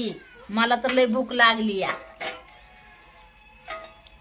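A woman's speech, a long drawn-out phrase, then a quieter stretch with faint steady tones of background music.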